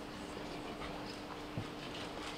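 Quiet hall ambience between announcements: a steady low hum with faint rustling and a soft knock about one and a half seconds in.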